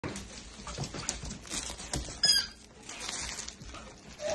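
A small dog's claws tapping and pattering on a wood-laminate floor as it trots. About two seconds in comes one short, high squeak from the squeaky toy in its mouth.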